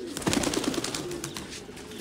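Domestic pigeons cooing, with a burst of rustling in the first second.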